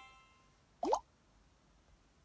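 A chime's ringing tones die away in the first half-second, then a short cartoon 'bloop' that glides quickly upward in pitch sounds about a second in: sound effects from an animated face-filter app.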